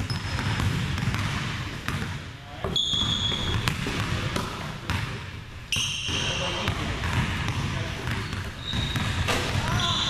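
Basketball dribbled on a hardwood gym floor, bouncing repeatedly, with sneakers squeaking sharply on the court a few times.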